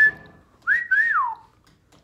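A man whistling with his lips: a short high note at the start, then a longer phrase that holds, wavers and slides down in pitch.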